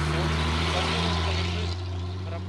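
A heavy truck passing close by: its diesel engine gives a steady low drone over tyre and road noise.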